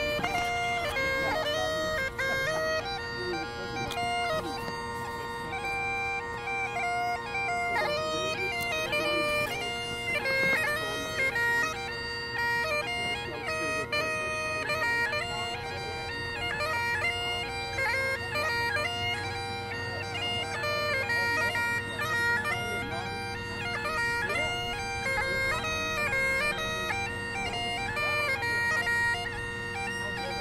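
Great Highland bagpipe playing: a chanter melody with quick, continuous note changes over the steady, unbroken drones.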